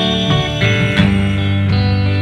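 Live rock band playing a short instrumental gap between sung lines: electric guitars ringing out chords over bass, with the chord changing a few times.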